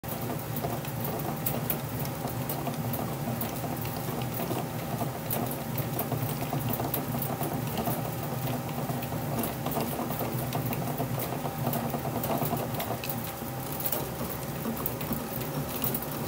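2023 DeMarini CF composite fastpitch softball bat turning between the rollers of a hand-operated bat rolling machine, being broken in under pressure. A steady low rumble from the rollers with continual fine crackling and clicking.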